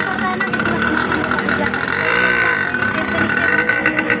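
People talking in a loud, busy space over steady background noise, with a continuous high-pitched hum underneath.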